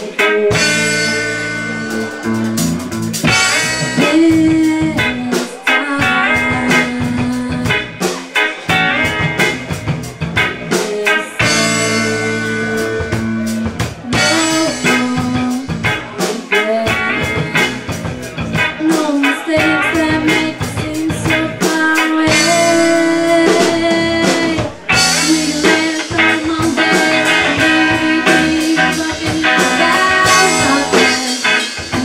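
Live band playing a blues-tinged rock song: a woman singing lead over guitars and a drum kit.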